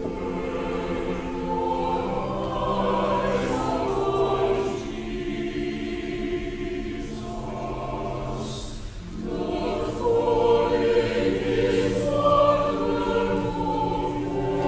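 Church choir singing in long, held phrases, with a short break about nine seconds in.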